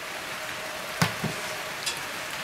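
A steady hiss of background noise, with one short knock about a second in as a small tin of seasoning paste is set down on a wooden slatted table. A faint steady hum runs through the second half.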